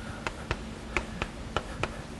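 Writing on a lecture board: a quick run of sharp, irregular taps, about seven or eight in two seconds.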